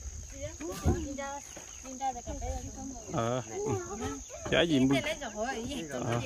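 A steady high-pitched drone of insects, with people talking close by over it on and off.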